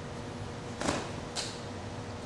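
Steady background hiss with two short swishing sounds, the first a little under a second in and the second, higher and thinner, about half a second later.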